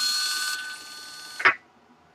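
Small DC motor under a PWM speed controller running with a steady whine, then stopped short by electronic braking with a sharp click about a second and a half in.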